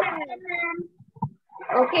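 Speech only: high-pitched children's voices answering over an online-class call in the first second, then a woman saying "okay" near the end.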